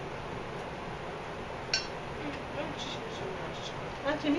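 A single sharp clink of a metal fork against a ceramic plate a little under two seconds in, with a few fainter taps near the end, over a steady low room hum.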